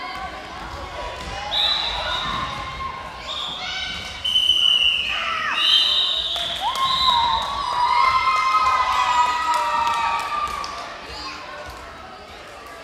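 Children shouting and screaming in a sports hall, high-pitched and loudest through the middle, with a ball bouncing and thudding on the floor.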